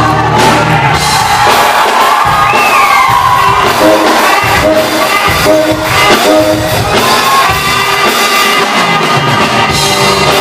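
Rock band playing live and loud in a large hall, with guitar, keyboards, drums and a saxophone.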